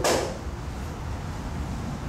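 A single sharp club-on-ball crack right at the start, fading within about a quarter second: a driver striking a ball in a neighbouring driving-range bay. A steady low rumble runs underneath.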